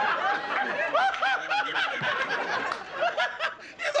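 Sitcom studio audience laughing together after a joke, dying away near the end.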